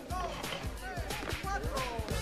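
Background music with a low bass line, with indistinct voices talking over it.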